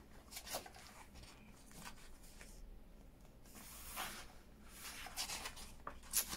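Paper pages of a hardback book being turned by hand: faint rustles and soft flicks of paper, with a longer rustle about four seconds in.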